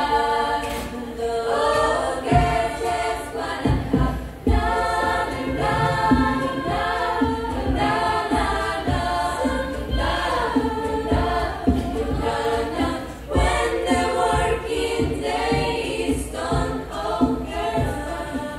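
A choir of young women singing in several-part harmony, the chords held and shifting. Irregular low thumps sound under the voices.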